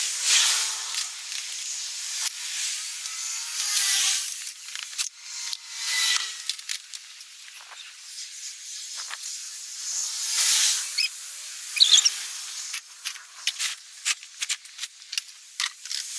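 Outdoor hiss that rises and falls in several gusts, like wind, with a run of small clicks and knocks in the last few seconds as plastic garden toys are picked up and moved.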